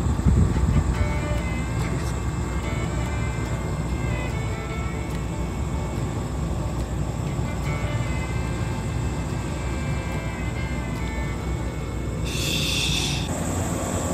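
A JR 381 series electric train running past with a steady low rumble, under music made of short stepped notes. A burst of hiss about a second long comes near the end.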